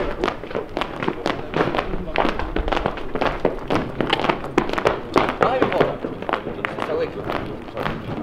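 Indistinct voices of people talking nearby, without clear words, broken by many short sharp taps and knocks at irregular intervals.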